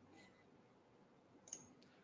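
Near silence with two faint clicks, a weak one just after the start and a sharper one about one and a half seconds in.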